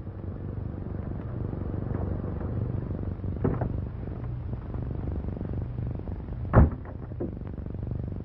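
Old sedan's engine running with a steady low rumble. A lighter knock comes about three and a half seconds in, and a car door slams shut once, sharply, about six and a half seconds in.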